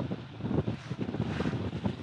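Wind buffeting the microphone in uneven gusts, a rough low rumble that rises and falls.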